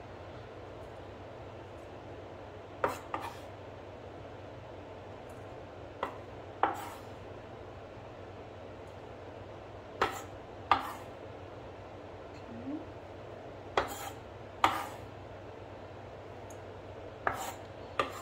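Kitchen knife knocking on a wooden cutting board and a stainless steel bowl as diced imitation crab is scraped off the board into the bowl. The sharp knocks come mostly in pairs, every three or four seconds.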